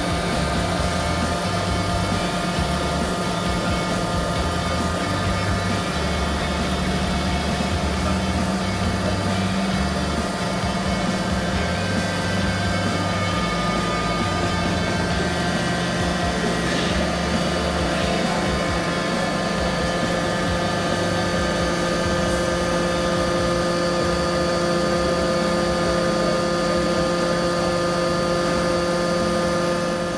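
Mollart deep-hole drilling machine running under load: a steady mechanical hum from its pump motor and drilling spindles, made of several steady tones, with more tones joining about halfway through.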